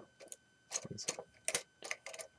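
Plastic Lego pieces clicking and knocking as a drill piece is pulled off a Hero Factory mech: a handful of short, irregular clicks.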